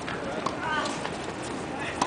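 Tennis ball rally on a hard court: a few sharp pops of racket strokes and ball bounces, the last near the end as the player swings, over spectators talking.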